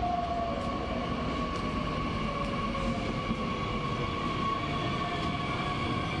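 Bombardier Talent 2 electric multiple unit running into a station as it slows, with a steady high whine and a second whine slowly falling in pitch over a constant low rumble.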